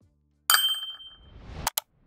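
Edited outro sound effects: faint low music notes, then a bright metallic ding about half a second in that rings and fades, followed by a rising whoosh that ends in two quick sharp clicks near the end.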